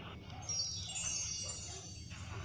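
A bright, high chime sweep that falls in pitch over about a second and a half, starting about half a second in, over a steady low background rumble.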